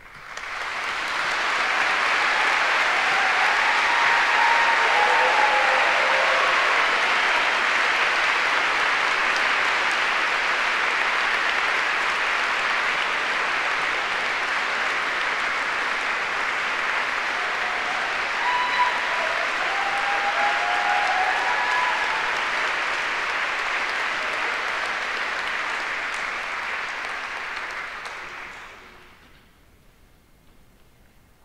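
A large audience applauding steadily. The applause swells up within the first second and dies away near the end, with a few faint calls over it.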